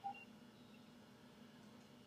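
Near silence: a pause between sentences, with a faint steady low hum and a brief faint blip right at the start.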